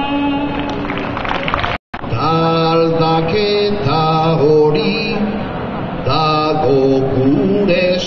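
Unaccompanied solo singing. A woman's voice holds a long note, then breaks off in a brief dropout about two seconds in. A man's voice follows, singing a slow, chant-like line of held notes that step up and down in pitch.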